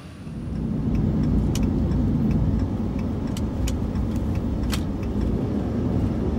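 Steady low rumble of a diesel pickup truck driving, heard from inside the cab, with engine and road noise and a few light ticks from loose items rattling.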